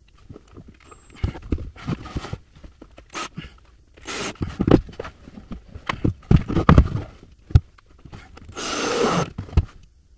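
Irregular knocks and clatter as a cordless drill and wooden panels are handled inside a wooden cupboard, with a short rough burst near the end.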